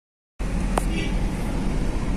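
Steady low rumble of a moving road vehicle heard from inside it, starting about half a second in, with a single sharp click shortly after and faint voices.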